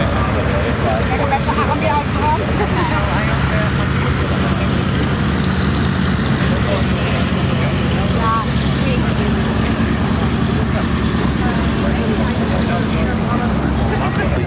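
Douglas DC-3's twin radial piston engines running at low taxi power, a steady low drone, with indistinct crowd voices over it.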